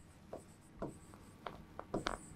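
Marker pen writing on a whiteboard: a few short, faint strokes as the letters are drawn.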